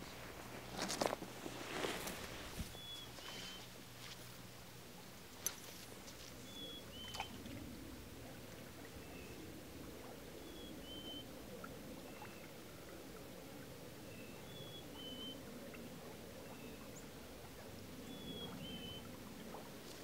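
Faint steady rush of flowing stream water, with a bird repeating a short two-note whistle, the second note a little lower, every two to four seconds. A few soft clicks come in the first couple of seconds, and a single sharp click about five and a half seconds in.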